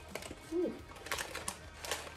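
Paper packaging rustling and crackling as it is pulled open by hand, with a few sharp crinkles in the second half.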